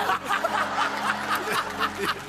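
Studio audience laughing in a quick run of short bursts.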